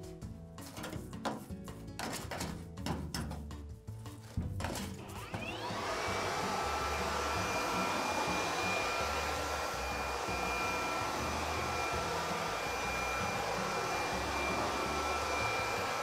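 A cordless DeWalt leaf blower spins up about five seconds in with a rising whine, then runs steadily with a rushing blast and a high motor whine. Before it, a brush scrubs the steel fence in short scratchy strokes. Background music with a low bass beat runs underneath throughout.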